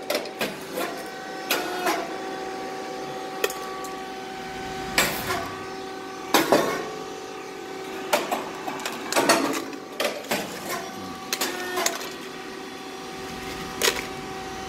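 Rice cake popping machine running: a steady mechanical hum with a few steady tones, broken every second or two by sharp pops and short puffs as cakes are popped and ejected.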